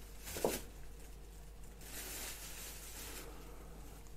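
Quiet room tone with a steady low electrical hum. There is a brief soft knock about half a second in, then a breathy rustle lasting about a second and a half near the middle.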